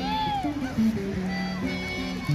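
Music played over a loudspeaker, with held, stepping low notes and a high note that slides up and back down in the first half-second.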